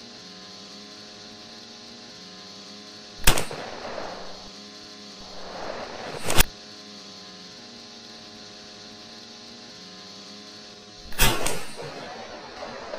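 Three gunshots ring out: one a little after three seconds, one at about six and a half seconds, and one near the end. Each has a short fading tail, over a steady engine drone.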